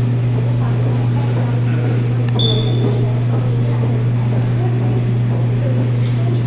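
A loud, steady low hum under faint murmuring voices, with a brief high-pitched tone about two and a half seconds in.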